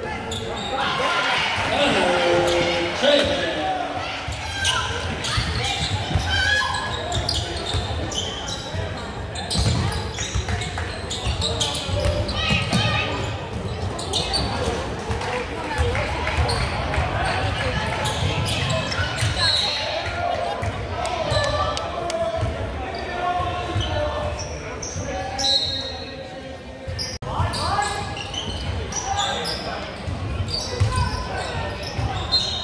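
Basketball bouncing on a hardwood gym floor during play, with overlapping crowd voices and shouts, echoing in a large gymnasium.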